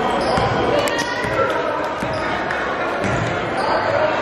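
Basketball dribbled on a hardwood gym floor, a handful of irregular bounces, under voices from players and spectators in the gym.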